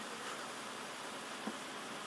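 Steady, even open-air hiss of a large silent outdoor gathering, with no speech. One faint click comes about one and a half seconds in.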